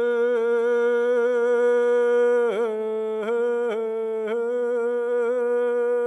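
A man's solo chant sung into a handheld microphone in the Sakha (Yakut) traditional style: one long held note, broken by short throaty catches in pitch, several in quick succession from about two and a half seconds in.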